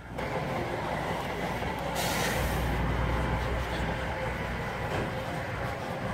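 Steady low rumble of idling diesel semi trucks, with a brief hiss about two seconds in.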